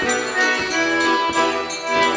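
Instrumental stretch of a folk tune played on a two-row button accordion and a mandolin, with a triangle ringing on the beat about three times a second.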